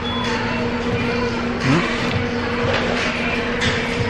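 Restaurant room noise: a steady low hum under a hiss of background noise, with faint voices now and then.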